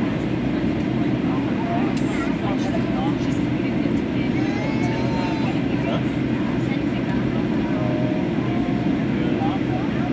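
Steady cabin noise of a Boeing 737 airliner on its landing approach: the even hum of the jet engines and rushing air, with faint passenger chatter underneath.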